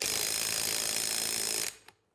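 A power driver spinning a Loctite-coated bolt into the end of a hydraulic drive motor's shaft to seat the drive sprocket. It runs steadily for under two seconds and then stops.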